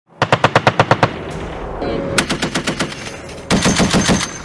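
Machine gun firing three short bursts of automatic fire, about nine or ten rounds a second. The bursts come at the start, about two seconds in and near the end, and each is followed by a rolling echo.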